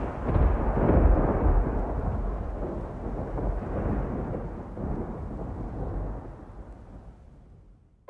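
A deep rolling rumble like thunder that fades slowly and dies out near the end.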